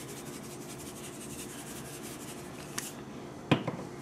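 Onion powder shaken from a plastic spice shaker over a crock pot: faint, rapid ticking and rustling, with a knock near the end.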